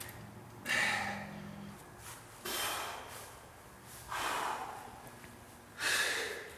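A man breathing forcefully with effort, four sharp exhales spaced about a second and a half to two seconds apart. Each breath is pushed out with a rep of a bent-over raise with weight plates.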